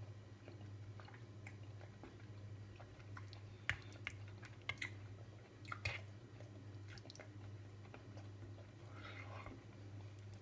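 Faint eating sounds: a metal spoon clicking a few times against the ready-meal tray while scooping curry and rice, along with chewing. A steady low hum runs underneath.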